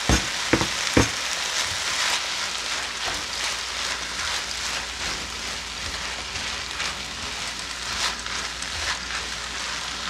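Rice and vegetables frying and sizzling in a large nonstick pan, soy sauce just added. Three sharp knocks in the first second, then a spatula stirring and scraping through the rice over the steady sizzle.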